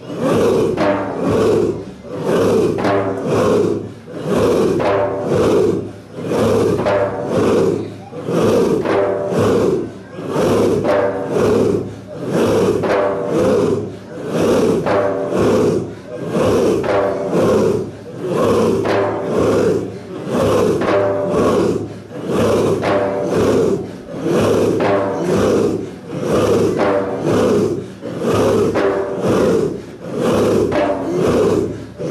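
A group of voices chanting dhikr together in a steady rhythm, pulsing about twice a second in repeated phrases about two seconds long.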